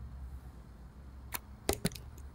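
A low steady hum with three short, sharp clicks near the end, two of them close together.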